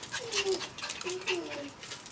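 A Chihuahua searching PVC nosework pipes: many quick, short sniffs and scrabbling sounds as it works along the row and puts its nose to the pipes.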